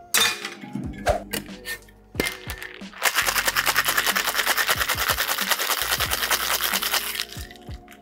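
Ice cubes rattling inside a stainless-steel tin-on-tin cocktail shaker during a hard wet shake. A few separate clinks of ice and metal come first, then a rapid, even rattle runs for about four seconds and stops.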